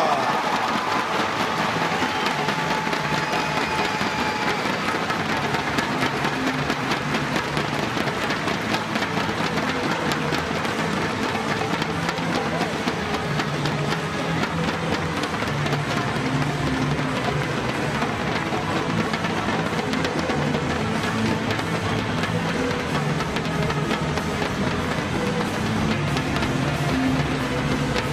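Arena walk-out music with a steady beat and held bass notes, over a crowd applauding and cheering continuously.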